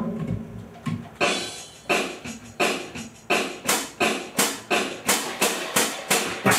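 Drum kit playing a steady rock beat of about three hits a second with ringing cymbals, starting about a second in as the intro to a rock song.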